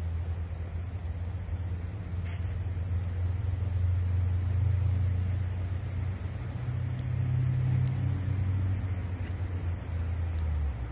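A steady low mechanical rumble, like an engine running at a distance, with one sharp click about two seconds in.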